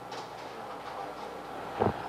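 Steady low hiss and hum of room noise, with a short low sound near the end.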